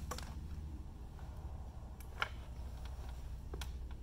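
A few light clicks from the metal TriForce carpet stretcher as its pinner and handle are worked, one sharper tick about two seconds in, over a steady low hum.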